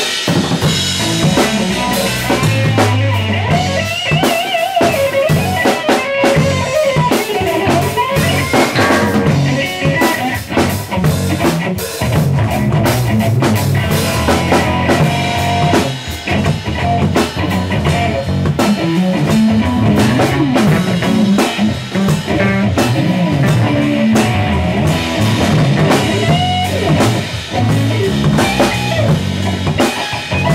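A band jamming live on drum kit, electric guitar and bass guitar, playing continuously with a busy drum beat.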